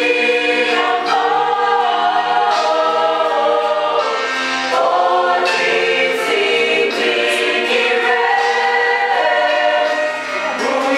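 Mixed choir of women's and men's voices singing a gospel song in harmony, holding long sustained notes.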